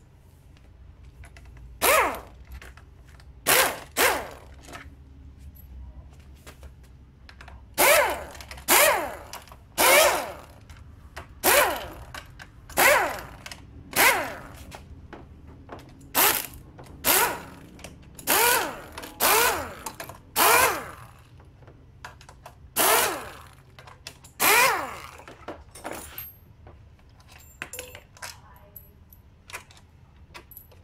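A handheld power driver spinning out the bolts of a Honda Vario 110 scooter's CVT cover in about sixteen short bursts, each under half a second, with a pause of a few seconds between the first few and the rest.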